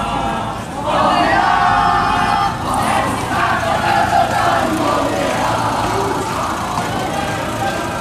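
A crowd chanting loudly together, many voices sustaining the same sung-out phrases.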